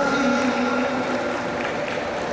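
A man's voice over the hall's announcing system holds one long, drawn-out syllable that fades about a second in, over a steady background of hall and crowd noise.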